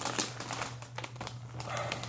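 A plastic chip bag crinkling as a hand rummages inside it and pulls out a chip: a run of quick, irregular crackles.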